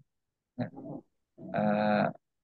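A man's voice, heard through compressed video-call audio: a short syllable about half a second in, then a long drawn-out "uhh" held at one steady pitch near the end, a hesitation before the next words.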